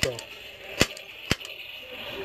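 Two sharp plastic clicks about half a second apart from a small toy Nerf crossbow being handled and cocked.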